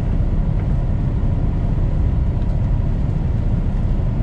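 Semi truck's diesel engine running at low speed, a steady low rumble heard inside the cab as the truck rolls slowly.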